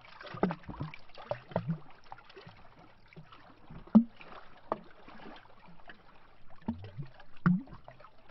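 Small lake waves lapping against a tree trunk, making irregular glubs and splashes about once a second. The loudest comes about halfway through, with another strong one near the end.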